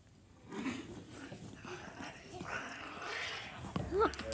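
Children growling like lions in play: low growls in the first second, then a longer, breathy growl later on.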